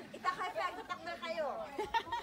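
Several people talking and chattering at once.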